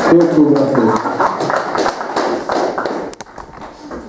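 Kazakh dombra strummed rapidly with a man's singing voice, closing out a song, with the strumming dying away about three seconds in. A sharp click follows just after.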